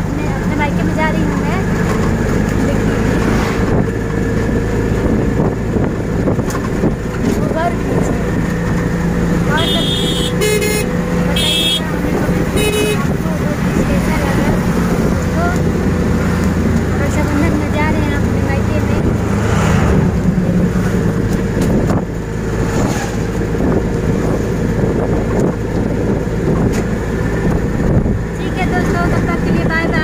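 A vehicle's engine runs steadily, heard from inside the moving vehicle along with road noise. About ten to thirteen seconds in, a horn sounds in several short blasts.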